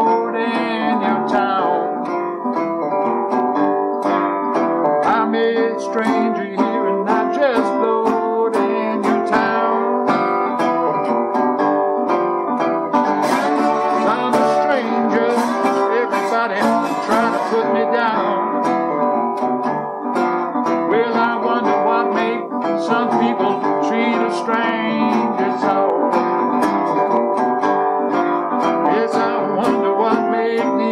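National tricone resonator guitar fingerpicked in a steady country-blues instrumental passage, with a repeating bass pattern under the picked melody notes.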